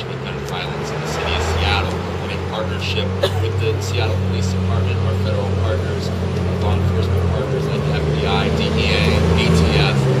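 A motor vehicle engine running with a low, steady hum that swells over a man's speech, growing louder and shifting in pitch a couple of times.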